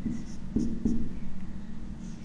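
Marker pen writing letters on a whiteboard: several short strokes of the tip against the board.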